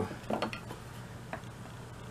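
Quiet workshop with a steady low hum and a few faint light taps and scrapes of a steel bench chisel being set against a pine dowel for paring. One light tick comes a little past halfway.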